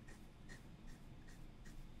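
Fountain pen drawing five short lines on paper: five faint, quick strokes about every 0.4 seconds.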